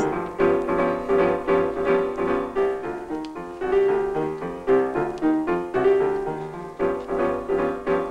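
Background music on piano: a run of short, separately struck notes in a fairly regular pulse.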